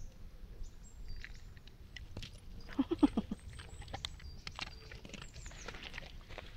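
Dog paws and steps scuffing and clicking on a gravel path as a dog noses at a cat, with a quick run of four short low grunts from the dog about three seconds in.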